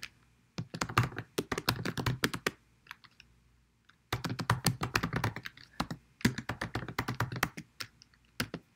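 Typing on a computer keyboard: quick runs of keystrokes, broken by a pause of over a second about two and a half seconds in.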